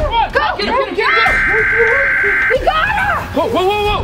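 Several high voices shrieking and yelling with no clear words, in an excited scuffle. About a second in, a steady electronic alert tone from a phone sounds for about a second and a half.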